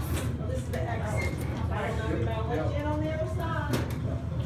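Indistinct voices talking over a steady low hum, with a short click near the end.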